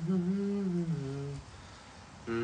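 A man humming a slow tune with his lips closed, holding notes and falling to a lower note about a second in, then stopping about halfway through.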